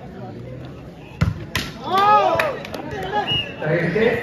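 A volleyball struck hard by hand twice in quick succession, two sharp smacks a little over a second in, followed by rising and falling shouts from players and crowd.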